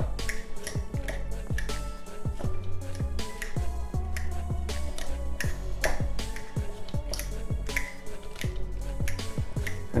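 Background music, with sharp clicks of a fork against a ceramic bowl as cooked potatoes are mashed.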